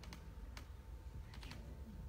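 A quiet pause filled with faint, irregular clicks and taps, coming more often in the second half.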